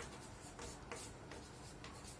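Chalk writing on a blackboard: a faint, quick run of short scratchy strokes, about four a second.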